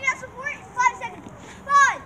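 Children's high-pitched voices making short wordless calls, ending in a loud falling squeal near the end.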